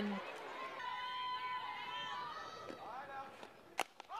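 Faint voices and calls from the ballpark crowd and players, then near the end a single sharp crack as the softball bat meets the pitch squarely. That crack is the hit that goes for a walk-off home run.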